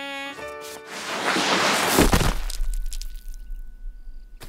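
Cartoon sound effects for a slide and a landing: a few quick musical notes, then a rising whoosh that ends in a heavy thud about two seconds in, with a low rumble fading after it.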